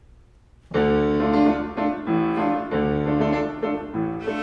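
Grand piano starting an accompaniment about a second in, playing a series of chords that change about twice a second. Before it enters there is only quiet room tone.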